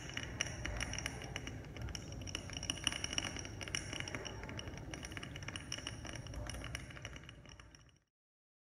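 A dense run of small clinking clicks over faint, steady high ringing, fading out near the end.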